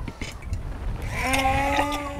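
Hand immersion blender switched on in a jar of eggs and sunflower oil, starting to emulsify them into mayonnaise. Its motor comes in about a second in with a steady hum that holds its pitch, after a low rumble.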